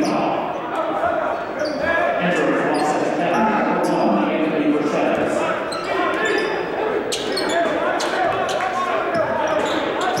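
Basketball bouncing on a hardwood gym court during play, among many short sharp sounds, over a steady babble of players' and spectators' voices echoing in the large hall.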